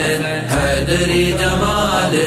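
Devotional chanting of a Muharram manqabat: sung male voices with a low droning hum underneath, the drone dropping out briefly about half a second in.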